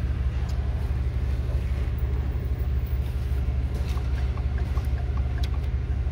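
2012 Ford F-150's 5.0-litre V8 idling steadily, heard from inside the cab as a constant low hum. About four seconds in, a light, regular ticking of roughly three ticks a second joins it.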